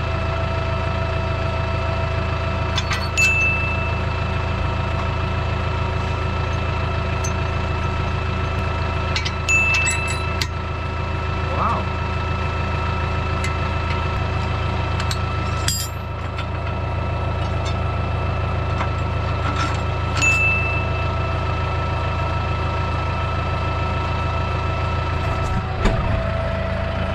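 Tractor engine idling steadily, with several sharp metal clinks that ring briefly as the plow's three-point hitch linkage and pins are worked by hand, about three seconds in, near ten, near sixteen and near twenty seconds.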